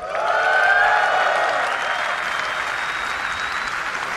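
Large audience clapping and cheering in response to an announcement. It rises to its loudest about a second in, then holds steady.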